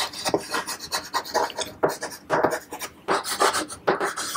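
Chalk writing on a chalkboard: a quick, irregular run of short scratching strokes as letters are written.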